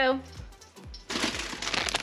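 A clear plastic bag of baby cucumbers crinkling as it is handled and lifted, starting about a second in, over background music.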